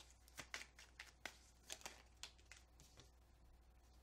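Faint soft clicks and flicks of a tarot deck being shuffled in the hands, an irregular run of them for the first two seconds or so that thins out to near quiet.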